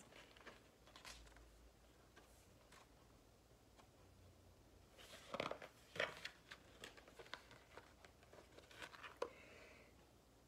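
Near silence, broken about halfway through by soft rustling and a few light taps as the pages of a paperback picture book are turned.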